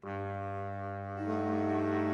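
Saxophone quartet coming in together on a sustained chord over a held low note. About a second in, the upper voices move up to a new chord and the sound grows louder.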